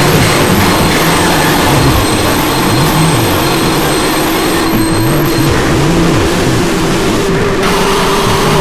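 Many screamer videos playing over one another at once: a loud, dense, unbroken wall of mixed noise, with low tones that rise and fall about once a second and a few steady high tones.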